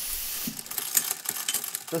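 Mechanical sound effects: a short hiss of steam, then a run of irregular clicking like gears and a ratchet turning.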